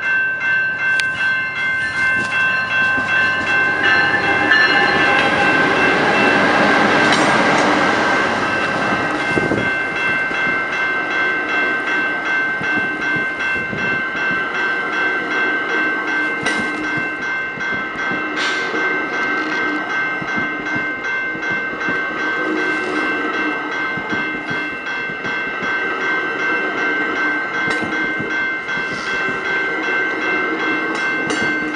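AMT commuter train passing close by: the locomotive swells past a few seconds in, then the bi-level coaches roll by with a clickety-clack over the rail joints. A bell rings steadily and evenly over it.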